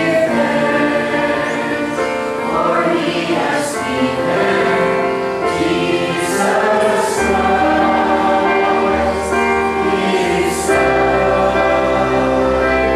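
Church congregation of men and women singing a hymn together, holding each note for a second or so, with low sustained accompanying notes beneath.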